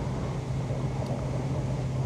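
Steady cabin noise of a high-speed electric train running at about 150 km/h, heard inside the carriage: a constant low hum over an even rumble.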